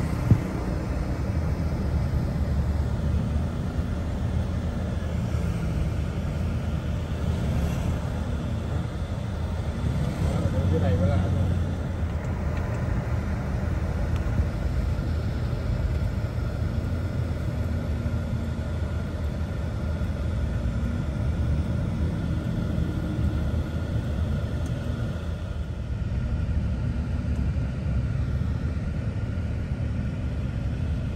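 Steady low rumble of a car driving along a city street, heard from inside the cabin, with passing traffic. A brief wavering higher sound comes about ten seconds in.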